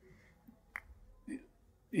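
A single short click a little under a second in, then a faint brief vocal sound, over quiet room tone.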